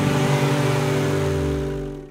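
Intro jingle sound effect: a car driving away, its low engine note falling in pitch under a held music chord, fading out near the end.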